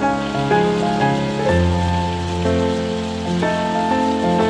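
Water from a fountain splashing steadily into its stone basin, heard under background piano music with slow held chords.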